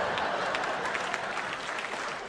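Live audience applauding, a dense patter of many hands clapping that eases off slightly.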